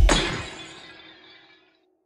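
Glass bottle shattering: one sudden smash at the start, whose ringing fades away over about a second and a half.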